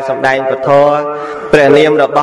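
A Buddhist monk's voice intoning a chant into a microphone, holding long steady notes. A new, louder note starts about one and a half seconds in.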